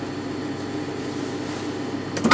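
Steady low electric hum of an industrial sewing machine's motor running idle, with no stitching.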